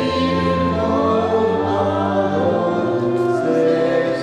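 A choir singing a slow hymn, with long held notes throughout.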